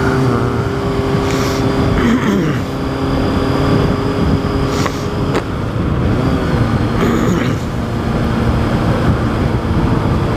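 Honda CBR600RR sportbike's inline-four engine running at a steady cruising speed under heavy wind rush, heard from the rider's mounted camera. There is a sharp click about halfway through.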